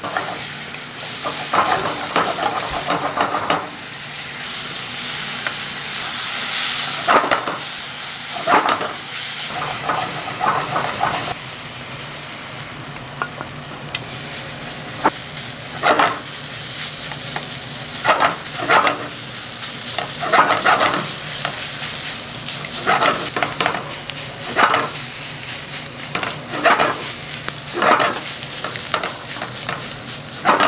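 Fried rice sizzling in a nonstick frying pan over a steady hiss, while a wooden spatula stirs and scrapes it in strokes every second or two.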